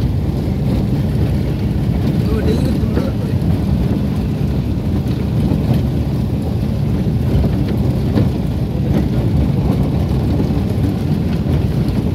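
Steady low rumble of a vehicle driving along a paved road, heard from on board.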